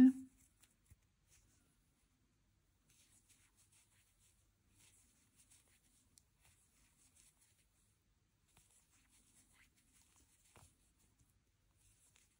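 Faint, soft scratching and rustling of a crochet hook drawing 100% cotton yarn through stitches while working single crochet along an edge. It comes in short irregular clusters, with one small click about ten and a half seconds in.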